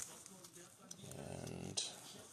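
Faint handling of a clear plastic card sleeve with gloved hands: soft crinkles and small clicks, the sharpest near the start and just before the end. About a second in there is a brief low hummed murmur of a voice.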